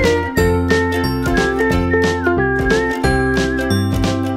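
Upbeat outro music with a steady beat, a bouncing bass line, a bright melody and short high chiming notes.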